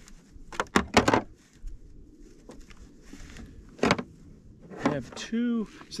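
Gear being rummaged out of a hard plastic storage tote: a few sharp knocks and rustles, three close together about a second in and single knocks near four and five seconds.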